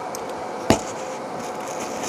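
A single sharp click about two thirds of a second in, as small survival-kit items such as tent pegs and cord are handled and set down, over a steady faint hiss.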